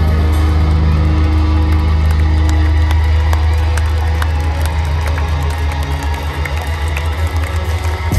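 Metalcore band playing live through a festival PA, heard from within the crowd: a heavy, sustained low drone with a slow pulsing line above it, mixed with crowd cheering and whoops. The sound thins out and dips slightly near the end.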